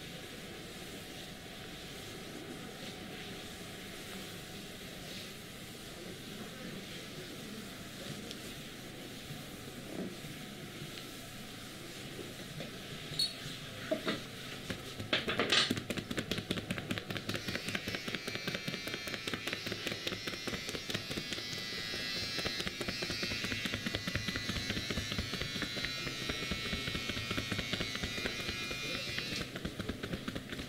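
Percussive chopping massage: hands striking rapidly on a back through a cotton hoodie, a fast, even patter of slaps that starts about halfway through and keeps going almost to the end. Before it there is only quiet rubbing, with a few sharp claps just before the patter begins.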